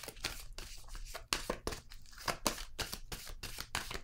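A deck of tarot cards being shuffled by hand, giving a quick, irregular run of short card clicks and flicks.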